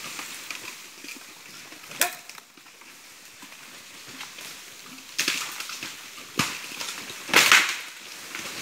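Dry bamboo and brush snapping and rustling: one sharp crack about two seconds in, then a run of short rustling, crackling bursts in the second half, the loudest near the end.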